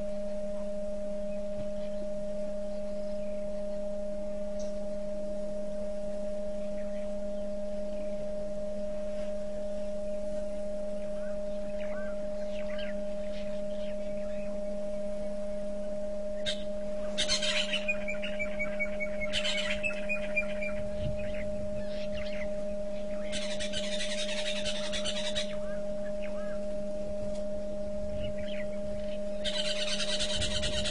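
Wild birds calling in several short bursts from about halfway through, some as runs of falling notes, over a steady low hum.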